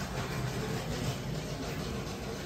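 Steady supermarket background noise: a constant low hum with an even wash of store noise and no distinct events.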